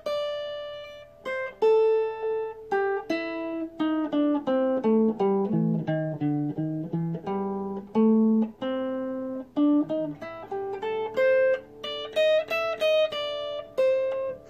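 Stratocaster-style electric guitar playing the A minor blues scale in its third pattern, one plucked note at a time. The notes step down in pitch for the first half, then climb back up after about eight seconds.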